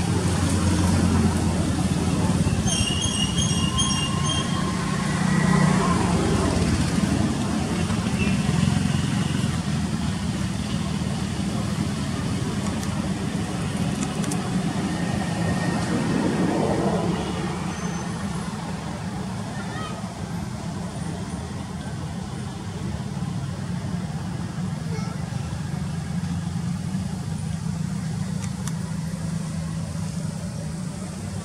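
A motor vehicle's engine running with a steady low hum, loudest for the first half and dropping off after about 17 seconds, with voices in the background.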